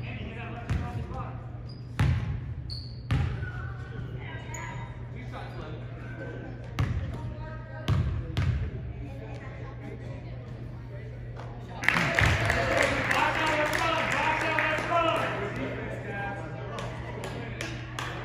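A basketball bounced several times on a hardwood gym floor, sharp separate knocks in the echoing hall. About twelve seconds in, a louder wash of crowd voices rises and carries on.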